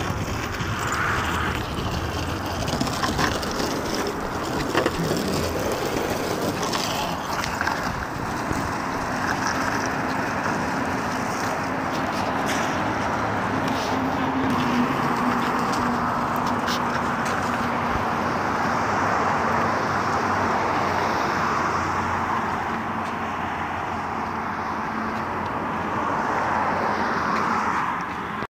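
Longboard wheels rolling on a concrete walkway, a steady rolling rumble with a few sharp clicks in the first half.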